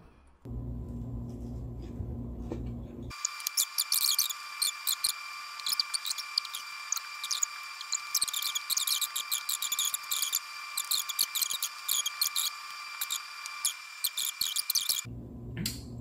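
Close-miked eating: a rapid, irregular run of wet mouth clicks and smacks from chewing, over a steady high electronic whine. A low hum comes before it for the first three seconds or so.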